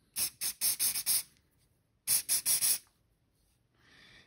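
CA glue activator sprayed onto a pen blank in short spritzes: a quick run of about four squirts, a pause of under a second, then about three more. The spray sets the medium CA glue holding the pen tube in the blank.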